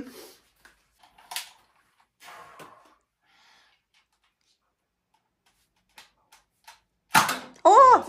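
A mostly quiet small room with a few faint short clicks. About seven seconds in comes a sudden loud sound, followed by voices.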